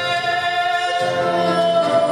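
A woman singing long held notes with piano accompaniment, moving to a new note about halfway through.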